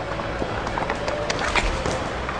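Ice hockey practice on the rink: skate blades scraping the ice, with several sharp clacks of sticks and pucks through the second half.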